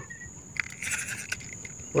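Faint, steady, high-pitched insect trill, with a brief soft rattle of small ticks about half a second in.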